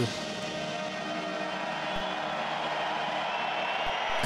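Brass band holding sustained chords over the noise of a stadium crowd, gradually getting louder.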